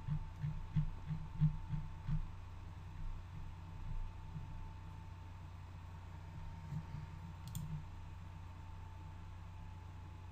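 Low steady hum with a thin, steady high tone, and faint irregular clicks in the first few seconds and one more a little past the middle.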